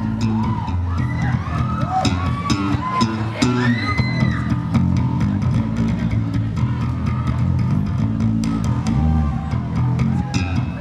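Electric guitar solo played loud through an amplifier, with sustained low notes and, in the first few seconds, several higher notes that swoop up and back down in pitch.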